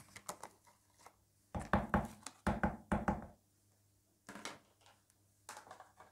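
Knocks and clatter from kitchen containers and utensils being handled and set down on a tabletop, in several short clusters, loudest between about one and a half and three seconds in.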